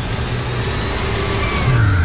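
Film trailer sound design: a steady low rumbling drone, with a rising whoosh about one and a half seconds in that drops into a deep, falling boom at the end.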